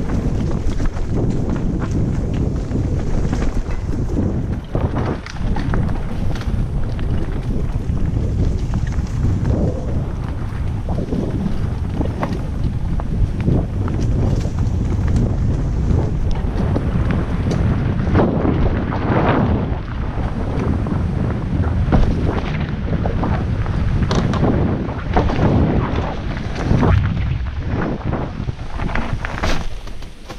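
Wind buffeting the microphone of a helmet-mounted GoPro on a downhill mountain-bike ride, a loud steady rumble. Tyres roll over the dirt trail under it, with frequent knocks and clatters from the bike hitting bumps, several louder ones in the second half.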